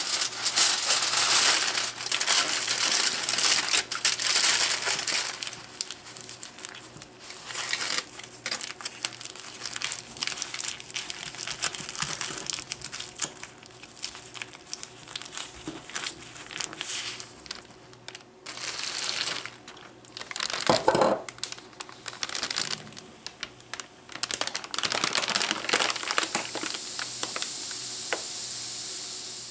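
Aluminium foil crumpled and crimped by hand into a tightly sealed packet, crinkling in irregular spells that are loudest near the start and again about two-thirds through. Near the end a steady hiss: a flameless heater bag venting steam as its reaction runs.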